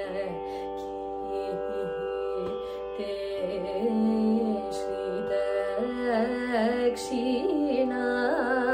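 Carnatic song: a woman singing a slow, ornamented melody with sliding and shaking notes over a steady drone.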